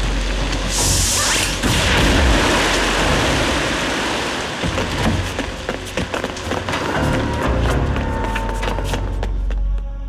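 Cartoon action soundtrack: dramatic music with a low rumble under crashing and splintering sound effects, a loud hissing burst about a second in, and a rapid run of sharp cracks through the second half.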